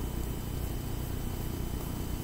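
Steady low background hum of room tone, with no distinct sounds standing out.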